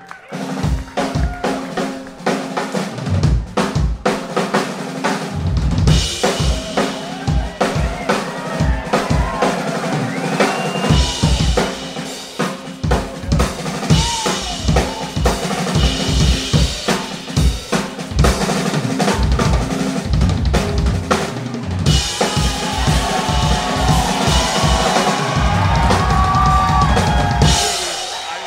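Drum solo on an acoustic drum kit: fast strokes on snare and toms driven by bass-drum hits, with cymbals crashing and washing through long stretches, most heavily from about six seconds in and again over the last six seconds.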